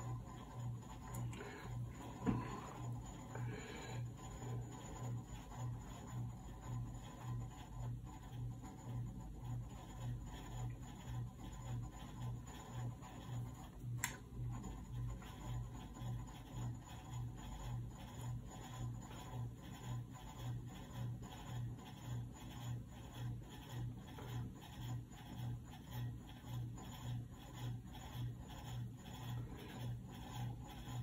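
Light strokes of a small watercolour brush on rough paper, over a low hum that pulses at an even rhythm. There is a sharp tap about two seconds in and another about halfway through.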